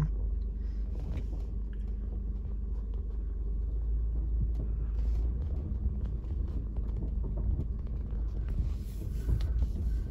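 Car driving slowly over gravel, heard from inside the cabin: a steady low rumble of engine and tyres, with faint light squeaks and ticks from the car as it rolls.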